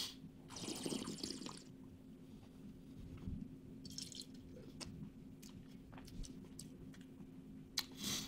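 Wine tasting in the mouth: a quick slurp at the start and a hiss of air drawn through the wine. About four seconds in there is a short spit into a stainless steel spit cup, with light clicks of the glass and cup being handled.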